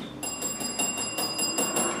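A small bell rung rapidly, about ten quick strikes in a row lasting a second and a half.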